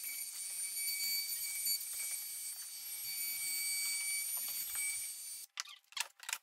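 A handheld cordless power tool runs with a steady high-pitched whine, then cuts off abruptly near the end, followed by a few short clicks.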